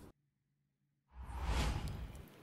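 About a second of near silence, then a whoosh sound effect of about a second with a low rumble beneath, swelling and then fading.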